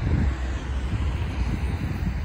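Uneven low outdoor rumble of distant city traffic and wind buffeting, picked up by an iPhone XR's built-in microphone with no processing.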